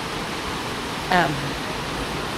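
Steady rushing of a waterfall, a constant even wash of water noise, with a short spoken "um" about a second in.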